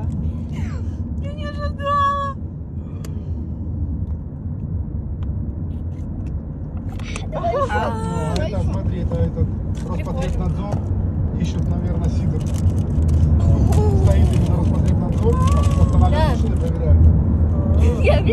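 Steady low road and engine rumble heard inside a moving car's cabin, growing louder about two-thirds of the way in, with voices coming and going over it.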